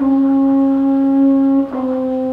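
Baritone horn playing slowly: one long held note, then a step down to a second held note near the end.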